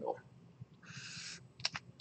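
A felt-tip marker drawn once down graph paper: a single scratchy stroke of about half a second, followed by two quick ticks.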